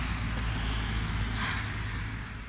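Steady low rumble of street traffic, with a short rustling noise about one and a half seconds in.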